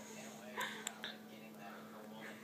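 Faint whispering, barely above a steady low electrical hum, with a small click just before a second in.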